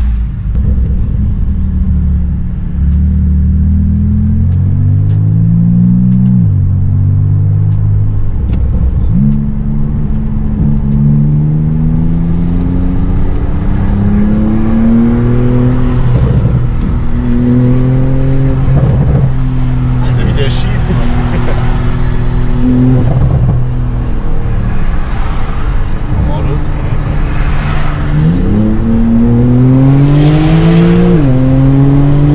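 Porsche 991.2 Turbo S twin-turbo flat-six with a catless Techart exhaust, heard from inside the cabin while accelerating hard onto the motorway. Its pitch climbs and drops back sharply several times as it goes up through the gears, with steadier cruising stretches in between.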